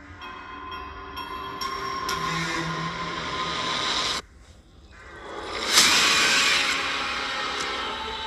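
Horror-film trailer sound design: a sustained many-toned drone builds up, cuts out abruptly about four seconds in, then a loud rushing swell rises and slowly fades.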